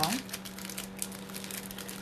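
Light crinkling and small clicks of a cardboard earring card and its tassel earrings being handled in the fingers, over a low steady hum.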